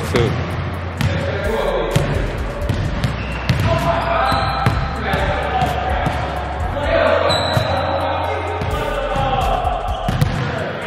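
Basketballs bouncing on a hardwood gym floor, a run of irregular thumps throughout, echoing in the large hall.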